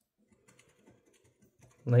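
Coin scraping the coating off a scratch-off lottery ticket: faint, irregular scratchy clicks.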